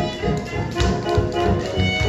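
Swing jazz playing with a steady, even beat and sustained horn and string notes over it.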